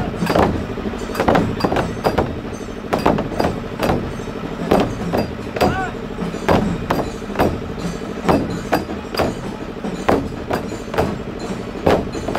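Several large frame drums beaten together in a steady marching rhythm, about two to three strokes a second.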